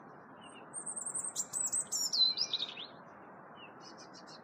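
A small songbird sings one phrase starting about a second in: a high, thin trill, then a run of notes falling in pitch, lasting about two seconds. A steady faint hiss runs underneath.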